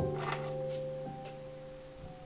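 Small buttons clicking against each other as they slide and drop down a thread, a quick cluster of light clicks in the first second. Soft background piano music fades under them.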